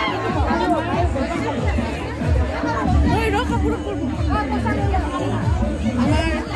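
Music with a steady bass playing under many people chatting at once in a large hall.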